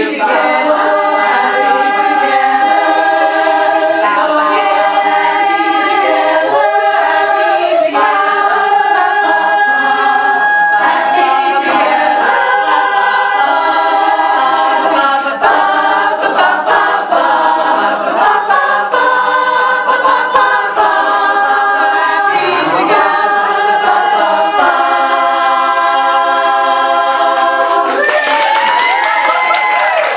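Women's barbershop chorus singing a cappella in close harmony, ending on a long held chord. Cheering and applause break out in the last two seconds.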